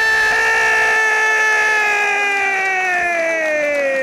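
A football commentator's single long goal shout, held on one call, its pitch slowly sinking toward the end.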